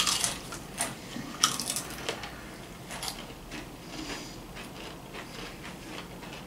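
Pringles Loud potato crisps crunching as they are bitten and chewed, with several sharp crunches in the first three seconds followed by softer, irregular chewing.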